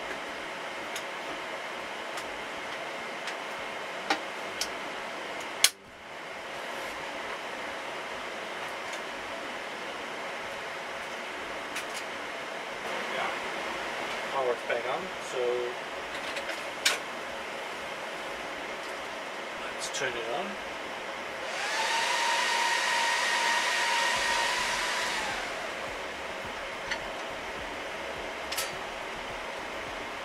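Steady whir of rack-mounted server cooling fans, with a sharp click about six seconds in and short sliding rattles as the rack's console drawer is pulled out. About two-thirds of the way through, a louder fan whine rises to a steady pitch, holds for about three seconds, then falls away.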